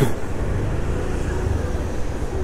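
Steady low rumble of road traffic, with a single sharp click right at the start.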